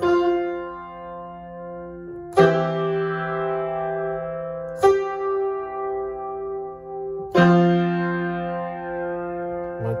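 Yamaha piano played with both hands: four slow chords struck about two and a half seconds apart, each held and left ringing as it fades.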